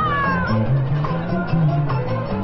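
Marching band playing, with a steady low bass line; a high note slides down in pitch in the first half second.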